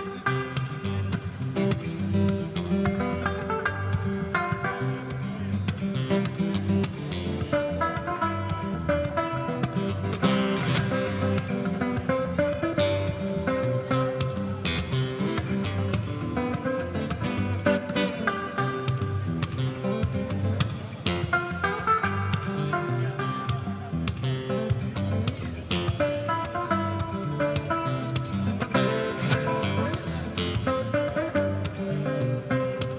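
Solo fingerstyle acoustic guitar playing a full arrangement at once: a bass line, percussive hits on the guitar, chord accompaniment, and a melody on the top two strings. A slotted plastic pick is clipped onto those two strings, so they sound not like a guitar.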